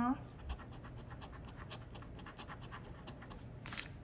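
A coin scraping the scratch-off coating from a lottery ticket held on a clipboard: quick, faint, rapidly repeated rasping strokes.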